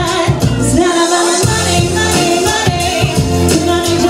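A woman singing a pop song live into a handheld microphone, holding long gliding notes over backing music with a bass line and a steady beat.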